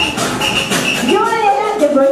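A group of people's voices, the loudest of them in the second half, with music playing lower underneath.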